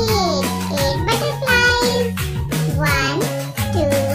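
Children's counting-song music: a backing track with a beat and a bass line, under a child-like singing voice whose pitch swoops up and down.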